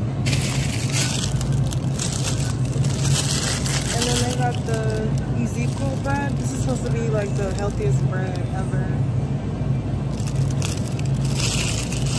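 Steady low hum of supermarket freezer cases, with the plastic bag of a loaf of bread crinkling as it is handled, in bursts near the start, about three seconds in, and near the end.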